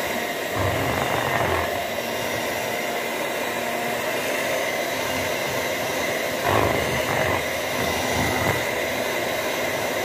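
A steady whirring noise, like a small motor or fan, with a few low bumps about a second in and again around seven and eight seconds.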